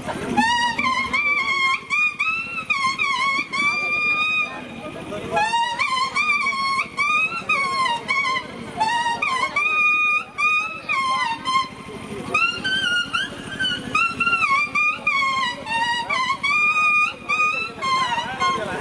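A tree leaf held against the lips and blown as a reed (Nepali leaf playing, paat bajaune), playing a sliding, wavering melody in a high, buzzy, trumpet-like tone. The tune runs in phrases with a short pause about five seconds in.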